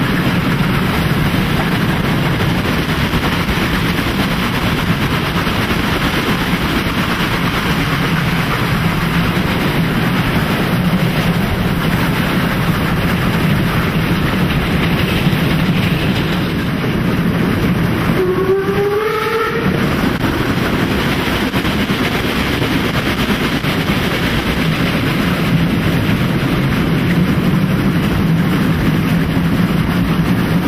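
Steam locomotive working hard, heard from beside it: a steady dense rush of exhaust and running gear. A short, slightly rising whistle blast sounds about two-thirds of the way through.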